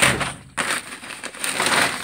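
A fertilizer bag being handled, crinkling and rustling in two stretches: a short one at the start and a longer one from about half a second in.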